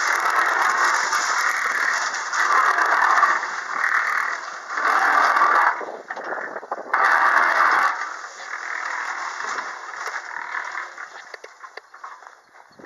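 Portable cement mixer running, wet concrete churning and scraping around inside the turning drum in uneven swells about a second apart. It fades after about eight seconds.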